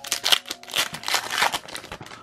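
Foil Pokémon TCG booster pack wrapper being torn open by hand, crinkling in a quick run of short crackles.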